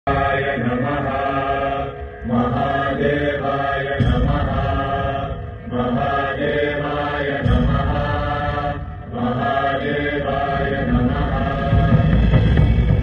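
A mantra chanted by voices over a music backing, in phrases of about three seconds with a brief break between each. A heavy low bass swells under the chant about four seconds in and again past the middle.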